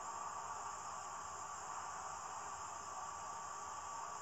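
Steady hiss with a faint hum underneath: the background noise of the film's soundtrack, with no other sound standing out.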